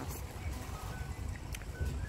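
Wind rumbling on the microphone, uneven and low, with a few faint short high tones in the second half.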